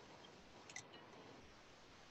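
Near silence: faint room tone, with a tiny click or two a little under a second in.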